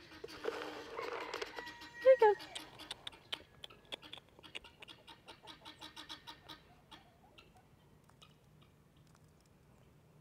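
Poultry making soft, quick clucking calls. There is a short, louder call about two seconds in, and the calls fade out about seven seconds in. A burst of rustling comes in the first second or so.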